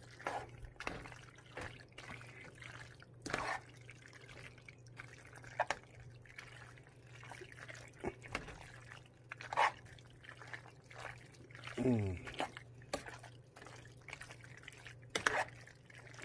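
A metal spoon stirring thick, creamy penne pasta in a pot: soft wet squelching with irregular light clicks of the spoon against the pot. A steady low hum runs underneath.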